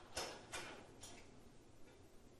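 A marking pen or chalk drawing on a lecture board: four short, sharp strokes or taps, the first two the loudest and the last one faint.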